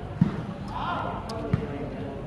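A volleyball struck by players' hands twice, sharp dull thuds a little over a second apart, with spectators' voices chattering behind.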